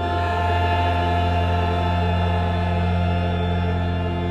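Church choir singing with organ accompaniment, holding a long sustained chord over a deep held bass note.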